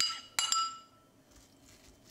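Dishware clinking against a white enamel bowl as dressing is poured onto chopped apple and a plastic spoon goes in: three sharp, ringing clinks in the first half second, the ring dying away within about a second.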